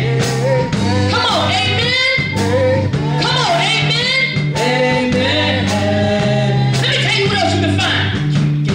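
A woman singing a gospel song into a microphone, her voice sliding through long ornamented runs over steady instrumental accompaniment with held bass notes.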